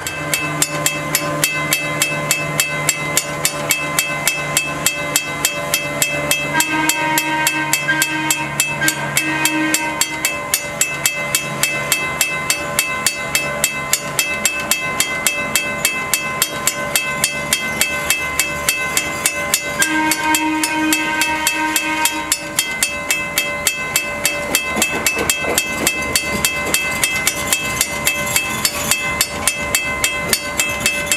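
Grade-crossing warning bell ringing steadily at about two strikes a second. Twice, about 7 and 20 seconds in, a held tone sounds for two to three seconds over it.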